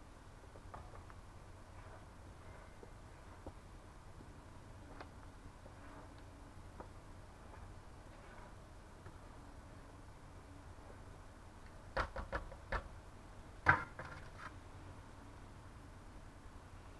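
Faint steady low hum with scattered light ticks, then a quick run of four sharp knocks about three-quarters of the way through and one louder knock a moment later.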